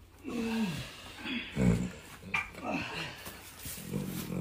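A foaling mare groaning in a series of short calls as she strains to deliver her foal; the first falls in pitch and the loudest comes just under two seconds in.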